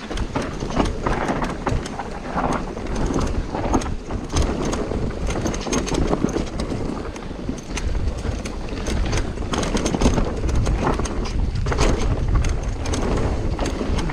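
Mountain bike descending a rough dirt trail: tyres rolling over dirt and roots with frequent rattles and knocks from the bike. Wind buffets the microphone, heavier in the second half.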